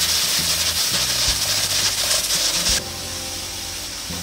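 Stovetop pressure cooker venting steam through its pressure valve with a steady loud hiss, the 'chik-chik' sign that it has come up to pressure and the heat should be turned down. The hiss cuts off suddenly about three seconds in.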